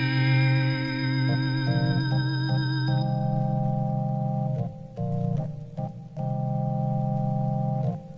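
Organ holding sustained chords with a wavering vibrato, part of an instrumental rock ballad intro. The chord changes about three seconds in, and the sound drops out briefly a couple of times in the middle.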